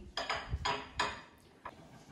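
Heavy porcelain balls knocking and clinking against a porcelain tray and each other as they are set down, about five short hard knocks within the first second and a half.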